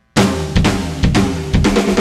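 A rock band starts playing abruptly a moment in: drum kit with kick, snare and cymbal hits, over sustained bass and electric guitar notes.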